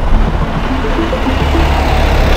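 Road traffic: a truck going by on the street, a steady low rumble.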